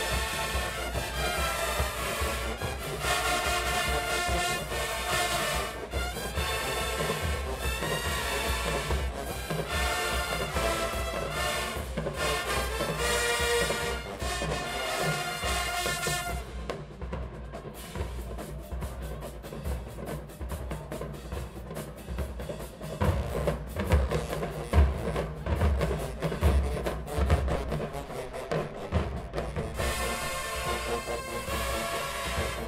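Marching band playing in the stands: loud brass over drums for about the first half. Then the brass drops out and the drumline plays alone, with heavy bass drum hits.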